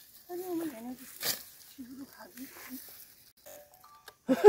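A distant voice speaking faintly in a few short bursts, with one sharp click about a second in.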